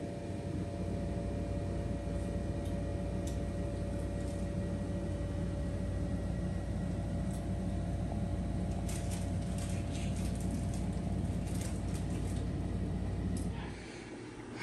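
A steady low mechanical hum with a few faint steady tones over it and some light ticks near the end.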